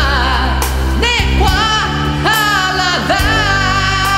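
A man singing a gospel song in Lisu over a pop band backing with bass and drums, holding long notes with vibrato.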